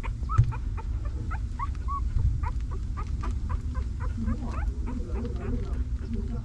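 Newborn puppies squeaking and whimpering: short, high squeaks, several a second, over a steady low rumble.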